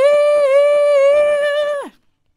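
A young woman's unaccompanied voice holding one long note with a slight waver, then sliding down and breaking off just before the end.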